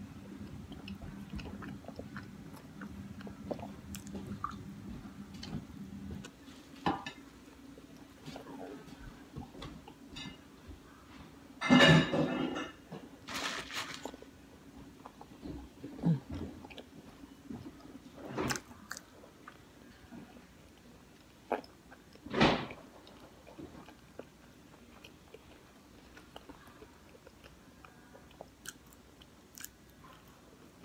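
Close-up chewing and biting of pizza in scattered short bursts of mouth noise, the loudest about twelve seconds in. A low steady hum runs underneath for the first six seconds, then stops.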